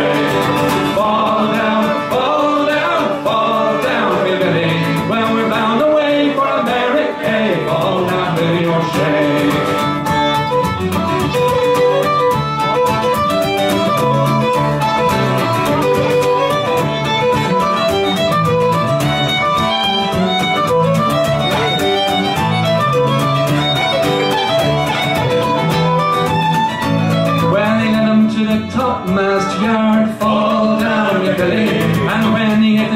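Fiddle and acoustic guitar playing an instrumental break of an Irish folk song, the fiddle carrying the melody over the guitar's accompaniment.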